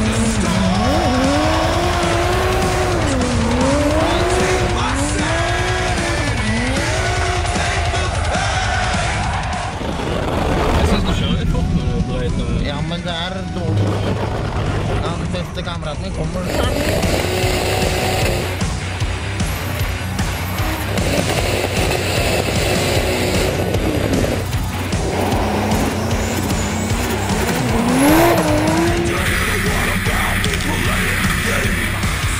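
Toyota Supra drift car's engine revving up and falling back again and again as it slides through the bends, with tyre squeal, under background music. Music with a steady beat carries the second half, and the engine revs up once more near the end.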